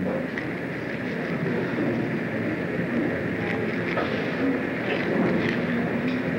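Steady hiss and low rumble of an early-1950s film soundtrack, with no distinct event standing out.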